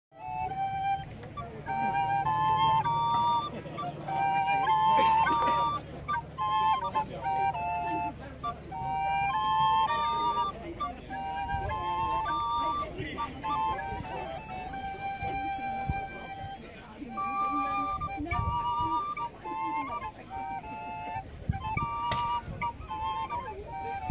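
A duet of two small wooden end-blown flutes playing a lively tune in parallel harmony, the two lines moving together in short notes.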